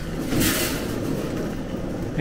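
Airport terminal background noise: a steady low rumble, with a short hiss about half a second in.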